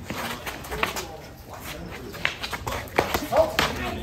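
Sharp knocks and clacks, several scattered through the moment, as two fighters exchange blows with short sticks, with a brief shouted exclamation near the end.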